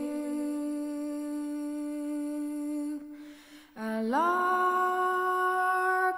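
A female voice singing a cappella in long, sustained, humming-like notes. One note is held for about three seconds, then there is a short break, and a new note slides upward and swells in about four seconds in.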